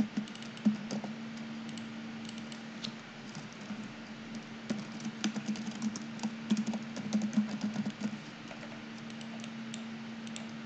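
Keystrokes on a computer keyboard, in irregular bursts with the busiest run of typing about five to eight seconds in, over a steady low hum.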